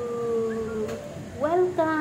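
A person's long drawn-out voice sound, held on one slowly falling pitch, stopping just under a second in; a second drawn-out voice sound that rises and falls starts about a second and a half in.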